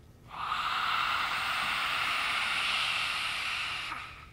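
A woman's lion's breath (simhasana) exhale: one long, forceful rush of air out through the wide-open mouth with the tongue stuck out, breathy and without voice. It starts just after the beginning, holds steady for about three and a half seconds and fades out near the end.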